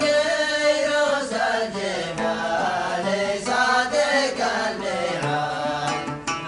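Male voice singing a Yemeni zamil in long held, wavering notes, with an oud playing underneath.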